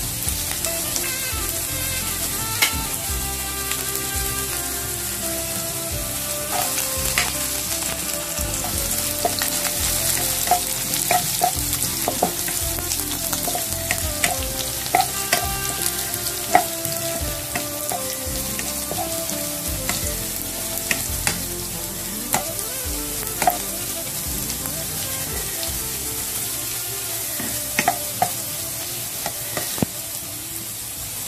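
Slivered garlic frying in hot oil in a nonstick pan: a steady sizzle, stirred with a spatula, with scattered sharp clicks throughout.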